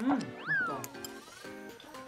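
A cartoon-like sliding sound effect that rises sharply in pitch and falls back again, over the show's light background music, just after a brief 'mm' of someone tasting food.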